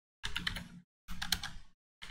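Computer keyboard typing in two short bursts of rapid key clicks, each about half a second long.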